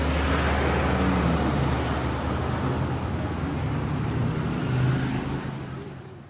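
Urban road-traffic ambience: a steady wash of car noise with a low engine hum, fading out near the end.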